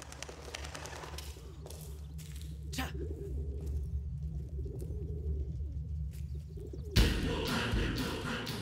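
Pigeons cooing over a low steady drone, with a sudden loud hit near the end.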